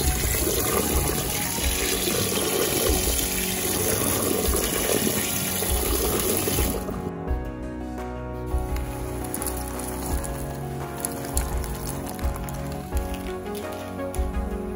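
Tap water running in a steady stream onto mushrooms in a metal mesh strainer as they are rinsed by hand; the water cuts off suddenly about seven seconds in. Background music plays throughout.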